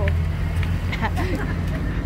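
A car engine idling nearby with a steady low hum.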